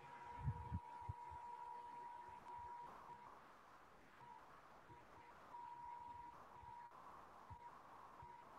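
Near silence on a video-call line: faint hiss with a faint steady high hum that cuts in and out, and a couple of soft low thumps about half a second in.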